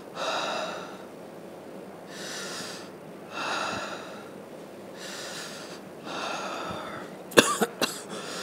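A man breathing deeply in and out through his mouth, about five long breaths, on request for a stethoscope check of his chest. Near the end he gives a couple of sharp coughs, the loudest sound here.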